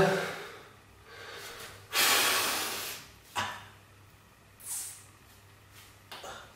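A man breathing hard through poses while flexing: one long, forceful exhale about two seconds in, then two short, sharp breaths a second or so apart.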